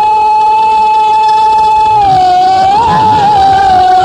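A woman singing a Haryanvi ragni holds one long high note, then bends it into small ornamented turns about two and a half seconds in, over faint drum accompaniment.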